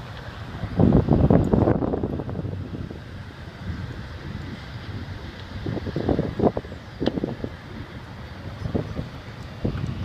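Wind buffeting the microphone in uneven gusts over a steady low outdoor rumble, with the strongest gust about a second in and more around six to seven seconds.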